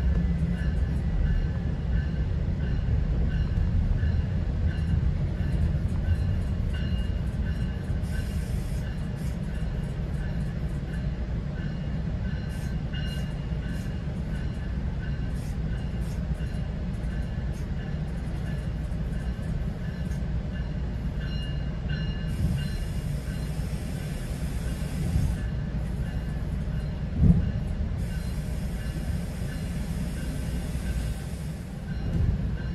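Passenger train coach rolling at speed, heard from inside: a steady low rumble of wheels on rail, with faint thin high whining tones over it and one sharp knock near the end.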